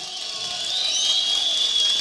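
Audience applauding, a steady run of clapping from a seated crowd.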